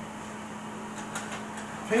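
Steady low hum with a faint hiss from a kitchen appliance or fan, with a few faint light clicks about a second in.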